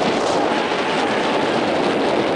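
Steady wind noise rushing over the camera's microphone.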